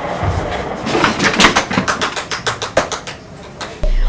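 Cardboard boxes knocking and rustling as they are carried: a quick, irregular run of taps and knocks, about eight a second, thinning out near the end.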